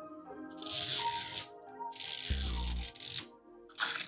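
Plastic wrapping on a Mini Brands capsule ball crinkled and torn off by hand, in three rustling bursts, the last one short, over faint background music.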